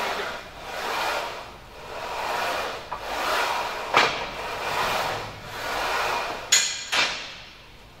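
Smith machine bar carriage sliding on its guide rods and floor rails in even strokes, about one a second, with a sharp knock about four seconds in and two metal clanks near the end.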